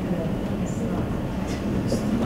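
Steady low rumble of room noise, with a faint murmur or two.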